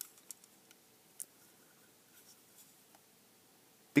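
Faint handling noise: a few light clicks and soft scraping as a small plastic beacon housing and its circuit board are turned over in the hands.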